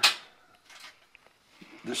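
A man's voice trailing off at the start and starting again near the end, with a faint brief rustle in the quiet pause between.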